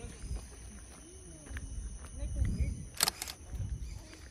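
Low rumble of a handheld phone microphone being moved about, with faint voices in the background and two short hiss-like noises just after three seconds.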